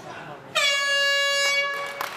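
End-of-round horn: one loud, steady blast lasting about a second and a half that starts about half a second in, dipping slightly in pitch at its onset, signalling the end of the round.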